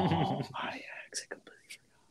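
Only speech: a voice trailing off into soft, whispered talk, fading to near silence near the end.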